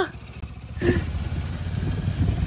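A sidecar motorcycle's engine running with a steady low rumble as it rides slowly past.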